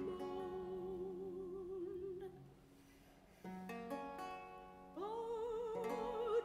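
Soprano voice holding a long note with vibrato over a renaissance lute, breaking off about two and a half seconds in. After a short pause the lute plucks a chord that rings and fades, and the voice comes in again on a higher note near the end.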